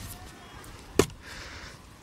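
A single sharp click about a second in, from a handheld metal-detecting pinpointer being handled before it has been switched on, with a faint hiss just after and otherwise quiet.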